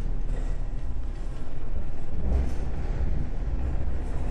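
Earthquake simulator running a seismic-intensity-7 quake: a loud, steady, deep rumble with a noisy rattling wash above it as the platform shakes.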